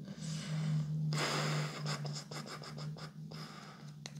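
Soft scratching and rustling, loudest for under a second about a second in, followed by a few light clicks, as of hands handling game pieces and cards on a cloth-covered table. A steady low hum runs underneath.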